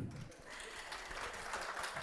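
Audience applause, starting about half a second in.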